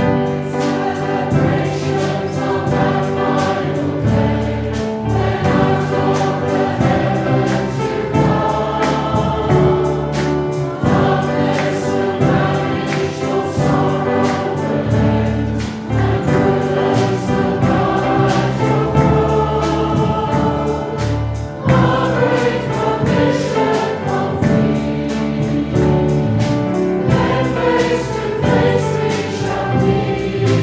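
A group of voices singing a contemporary worship song in chorus, with instrumental backing that carries a steady beat and bass line.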